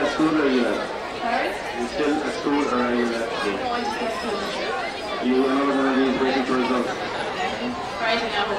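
Speech: a microphone interview, with chatter from people around it.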